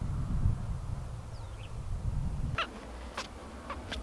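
A low rumble for the first two and a half seconds that cuts off suddenly, then a bird giving short calls about two a second.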